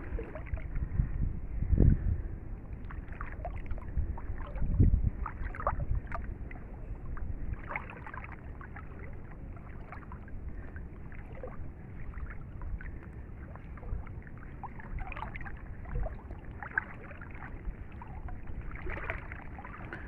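Water lapping and sloshing against a small boat on a mangrove river, with scattered small splashes and ticks and two heavier low thumps about two and five seconds in.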